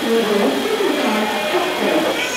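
A person singing a wavering, held melody, loud and continuous.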